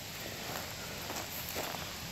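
Footsteps on a dirt trail, a few faint scuffs over a steady background hiss.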